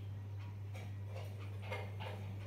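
Steady low electrical hum with a few faint, irregular ticks and clicks over it.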